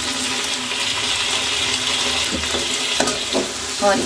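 Freshly added chopped tomatoes sizzling steadily in hot oil in an aluminium kadai with frying onions and potatoes, their juice spitting in the fat. A few light clicks of a metal spatula against the pan come in the second half.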